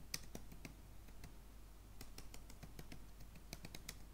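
Faint typing on a computer keyboard: an irregular run of keystroke clicks as a couple of words are typed.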